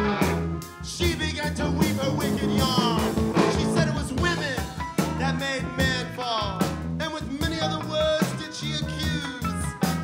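Live rock band playing an instrumental stretch of the song: electric guitar, bass and drums keeping a steady beat under a lead melody that bends and wavers in pitch.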